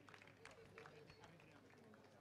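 Near silence, with faint, indistinct voices in the background.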